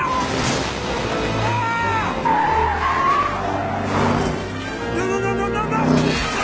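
Film sound effects of a race car skidding and sliding on a dirt road: tyres squeal in gliding pitches through the middle, over engine and road noise, with background music underneath.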